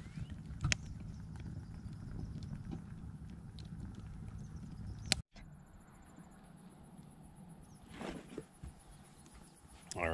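Wood campfire crackling, sharp pops over a low rumble, ending abruptly a little over five seconds in. After that comes a quieter evening background with a faint, steady high insect trill.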